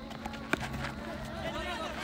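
One sharp crack of a cricket bat striking the ball about half a second in, over faint background voices.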